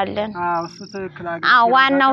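A woman talking, with a short, steady, high insect trill behind her voice about half a second in.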